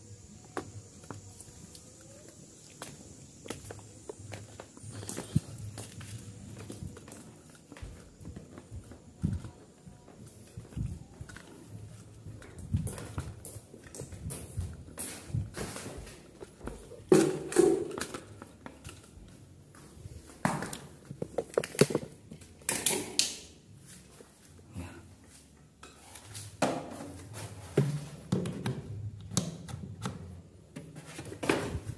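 Irregular knocks, clatter and footsteps as a standing electric fan is handled and carried, with the loudest knocks a little past the middle.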